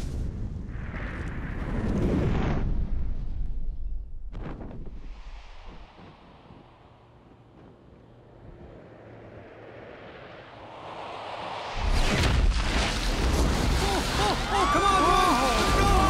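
Cartoon sound effects of a space capsule's re-entry: a loud, rumbling noise that fades to a quiet hiss during the parachute descent. About twelve seconds in comes a sudden loud crash as the capsule slams into the ground, followed by rumbling.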